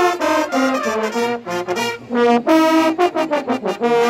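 Italian Bersaglieri military brass band playing a march tune together, a busy run of short, separated notes.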